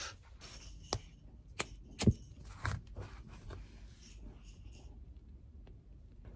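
Light handling noises on a workbench: four sharp clicks in the first three seconds, then fainter ticks and scrapes as tools and hard RC-car parts are moved about.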